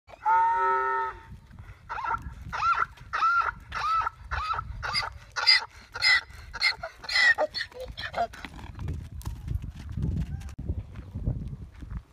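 Donkey braying: one long held note, then a run of short rasping hee-haw calls at about two a second that stops about eight seconds in. After that, low scuffling noise.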